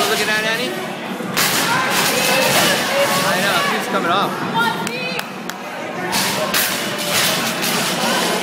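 A loaded barbell with bumper plates thumps onto the lifting platform after an overhead snatch, about a second and a half in, amid people's voices shouting in a large gym hall.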